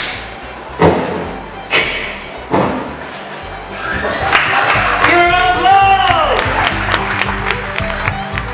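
Four sharp ricochet-like hits a little under a second apart, one for each bounce of the imaginary sleep bullet, then a pitched tone that bends up and slides down, over background music.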